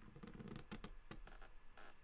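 Steel dip-pen nib scratching across drawing paper as lines are inked. A quick run of short, faint scratches in the first second or so, then one more near the end.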